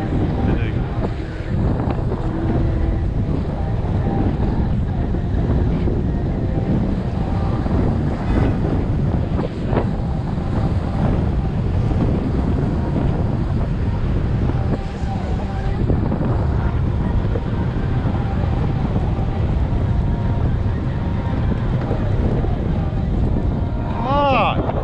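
Wind buffeting the microphone of a camera on a moving bicycle, a steady low rumble.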